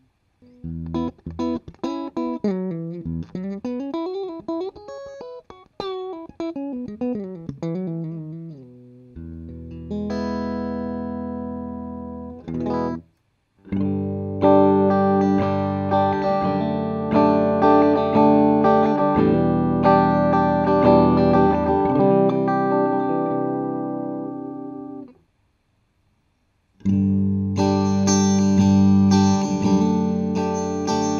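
Electric guitar played through a multi-effects processor's acoustic guitar simulation, heard first on the Zoom G5n and then on the Boss ME-80. Picked single-note lines run for the first nine seconds or so, then ringing strummed chords follow, with a brief break about thirteen seconds in and a two-second silence near the end before the chords resume.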